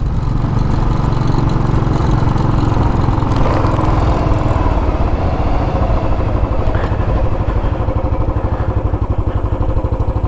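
Royal Enfield Classic 500's single-cylinder engine running steadily as the motorcycle rides along. Its separate firing pulses become distinctly audible in the last few seconds.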